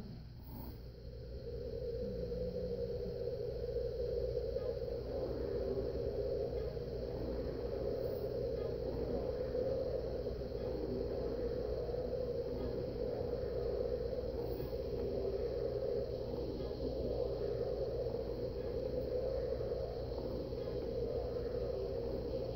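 A floor cushion with a child sitting on it, pushed round and round on a wooden floor, making a steady rubbing whir. It builds in about two seconds in and keeps going evenly while the spinning lasts.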